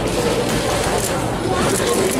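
Indistinct chatter of a large crowd of onlookers in a boxing gym, many voices overlapping steadily.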